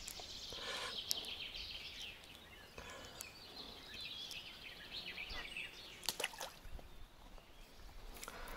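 Small birds singing, a busy run of high, quick chirps and warbles, with a couple of short faint clicks about a second in and around six seconds.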